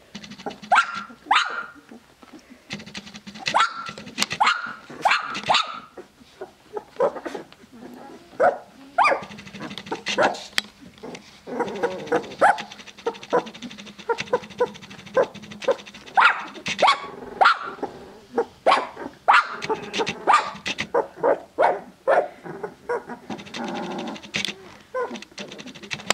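Two-week-old Tibetan Mastiff puppies giving many short, high cries, several in quick succession and then brief pauses.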